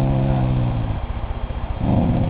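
A dog's low, moose-like "growl": one held, moaning note that lasts most of the first second, then a shorter one near the end, over a fine rumbling undertone. It is his grumble of annoyance at kittens pestering him.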